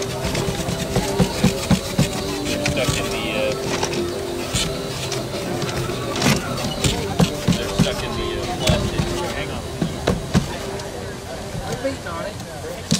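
A clear acrylic raffle drum full of paper raffle tickets being turned by hand to mix them, with irregular knocks and thuds as it rotates. Background music and crowd chatter run underneath.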